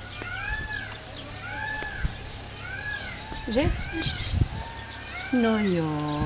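A cat meowing repeatedly: about five short mews, each rising then falling, roughly a second apart, then a longer, lower meow near the end.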